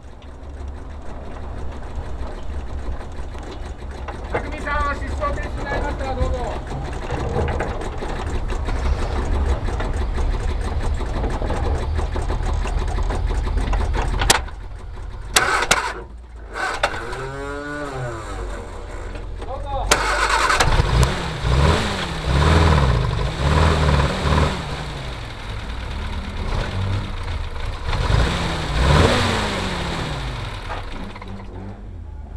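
Car engine running and revving, with a long falling glide in pitch about halfway through and repeated rises and falls in pitch through the second half, broken by two brief dropouts.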